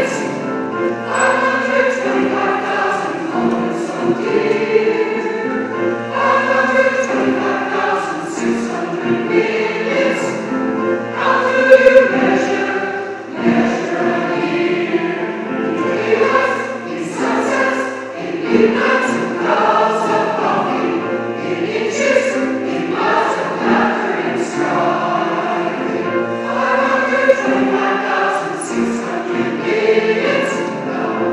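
A mixed church choir of women's and men's voices singing together in parts, without a break.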